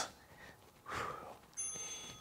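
A soft breath about a second in, then a thin, steady electronic beep from a phone's interval timer starting near the end, marking the close of a 20-second work interval.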